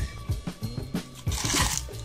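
Background music with a drum beat, and about one and a half seconds in a short scraping rip as a knife blade slices through the packing tape and cardboard of a shipping box.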